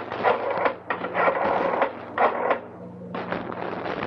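A telephone being dialled: the dial is turned and whirs back several times in a row, a rattling mechanical sound repeated with short gaps.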